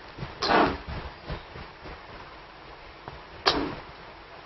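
A duster wiping marker off a whiteboard: two short, loud swishes, about half a second in and again near the end, with softer rubbing between them.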